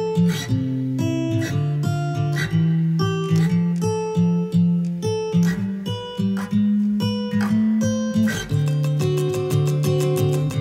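Acoustic guitar music with a steady picked rhythm over low bass notes. About eight and a half seconds in, it changes to a faster, busier pattern.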